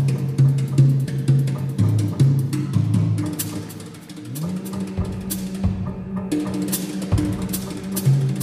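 Live free-improvised jazz from a piano, wind instrument and drum kit trio: low held notes run throughout, one sliding up and holding about halfway through, over drum and cymbal strikes.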